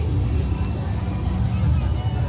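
Busy street-parade ambience: a loud, uneven low rumble with faint crowd voices over it.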